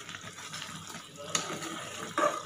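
Mango slices simmering in sugar syrup in an aluminium kadhai, a steady bubbling sizzle, while a flat metal spatula stirs them with one light knock against the pan a little over a second in.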